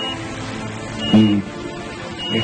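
Soft background music of sustained, held notes, with a brief voice heard about a second in.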